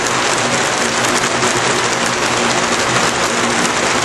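Steady hiss of rain, with water running off the edge of a gutter in front of the downspout instead of into it.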